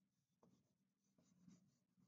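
Faint scratching of a black wax crayon rubbed over paper in a few short shading strokes, the strongest about one and a half seconds in.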